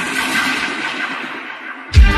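Rushing rain-like water noise during a break in the song's beat, with a faint held synth note beneath it, slowly fading; the full band with bass and drums comes back in at the very end.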